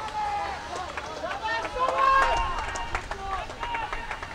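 Footballers' voices shouting and calling to each other on the pitch, several overlapping, loudest about halfway through, with a few sharp knocks among them.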